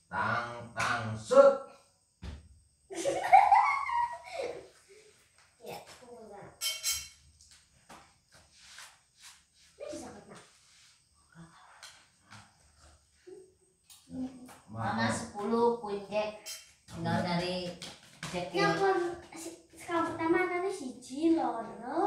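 Voices of a family talking and laughing, a child's voice among them, in a small room. There are quieter gaps with a few short light taps, and the talk picks up again in the last third.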